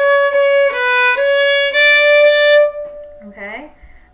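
Violin bowed in a few slow sustained notes, stepping up and down by small steps between the second and third fingers. It demonstrates a high second finger placed close to the third. The notes stop about two-thirds of the way through, followed by a brief spoken word.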